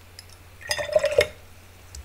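A paintbrush rinsed and clinking in a glass water pot: one short burst of clinks and water a little under a second in.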